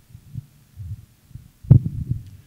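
Handling noise from a handheld microphone being passed from one person to another: a series of low thumps and rubbing rumbles, the loudest thump about three quarters of the way through.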